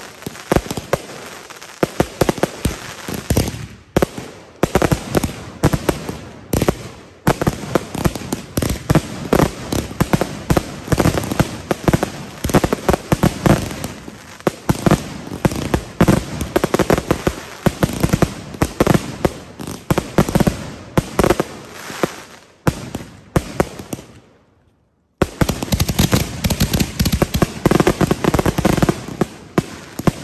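Dense, rapid barrage of shots and bursts from several consumer firework cakes firing at once. It pauses briefly to silence about three-quarters of the way through, then resumes.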